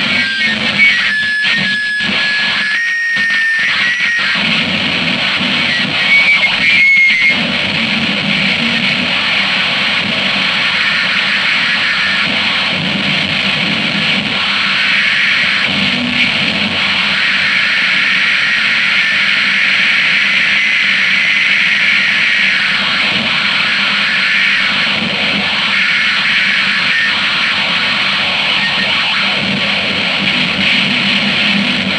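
Noisecore recording: a dense wall of harsh, distorted noise. In the first several seconds it cuts out briefly a few times, with steady high tones sounding over it. After that it runs on unbroken.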